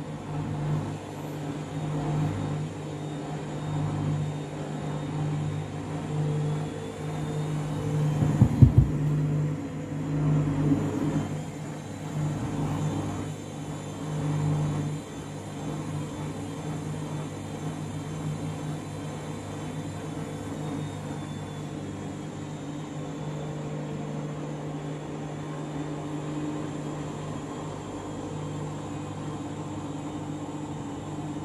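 Candy front-loading washing machine humming as its drum tumbles wet bedding through water, with swishing swells every couple of seconds and a few sharp knocks about eight seconds in. The sound settles to a steadier, even hum in the second half.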